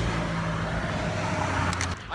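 A motor vehicle running close by on the road, heard as a steady low engine hum over a wash of road noise.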